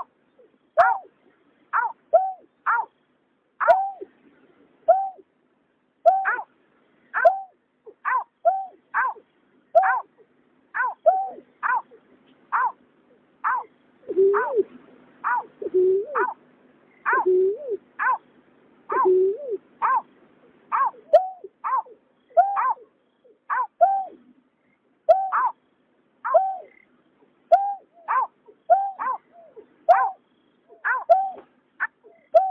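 Greater painted-snipes calling: a steady series of short notes that each drop in pitch, a little more than one a second. From about 14 to 20 s a second, deeper voice joins with four louder hoots.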